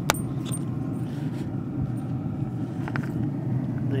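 A sharp plastic click as a squeeze bottle's flip-top cap snaps open, then a fainter click about three seconds in, over a steady low rumble.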